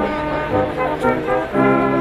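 Brass band playing outdoors: cornets, tenor horns and euphoniums sounding slow, held chords that change every half-second or so.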